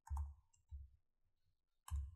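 Three separate computer keyboard keystrokes, quiet clicks with a dull thump, spaced about a second apart.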